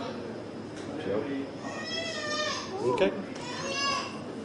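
A toddler fussing with high-pitched, wavering cries, in a bout about halfway through and another starting near the end.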